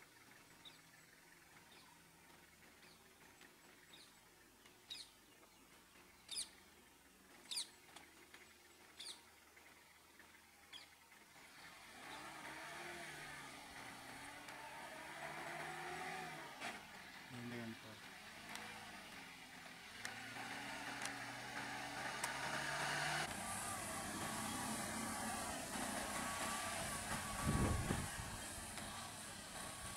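A few short, high bird chirps over quiet roadside ambience, then, about twelve seconds in, the steady noise of vehicle engines running comes up and stays, with voices faintly in it. A single low thump near the end.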